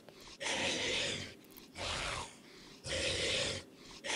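A zombie sound effect from an augmented-reality app: three raspy, breathy growls, each under a second long, with short gaps between them.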